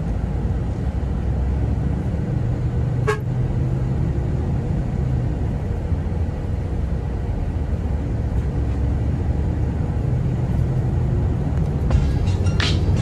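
Bus moving along a road, heard from inside the cabin: steady low engine and road rumble, with one brief sharp sound about three seconds in.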